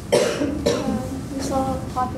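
A woman coughing twice, two sharp coughs about half a second apart, then a short voiced sound near the end.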